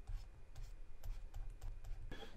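Faint light clicks and taps of a stylus writing on a drawing tablet, with soft low thuds in between.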